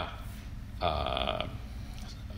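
A man's voice makes one short, drawn-out vowel, like a hesitation 'eh', about a second in, between phrases of speech.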